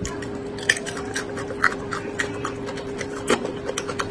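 Close-miked chewing: irregular crisp mouth clicks and crunches, about one or two a second, over a steady low hum.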